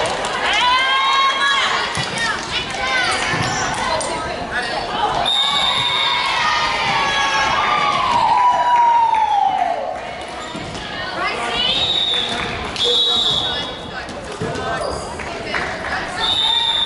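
Players' voices calling out and sneakers squeaking on a hardwood sports-hall floor, with scattered thuds, in a large echoing hall.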